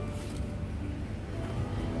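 Shop room tone: a steady low hum with faint background music.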